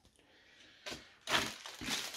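A small click just under a second in, then the crinkling of a small plastic zip-lock bag of Lego parts being picked up and handled.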